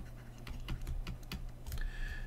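Faint, irregular light clicks and taps, several a second, from handwriting with a stylus on a digital whiteboard, over a steady low hum.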